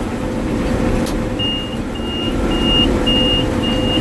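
Gleaner M2 combine running, heard from inside the cab as a steady machine drone with a whine. About a second and a half in, a high electronic alarm starts beeping steadily, about two to three beeps a second.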